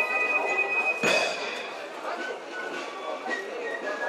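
Corps of drums (Spielmannszug) fifes holding a high chord, cut off by one sharp full-band stroke of the drums about a second in. The chord then dies away, and a few short, softer high notes follow over a background murmur.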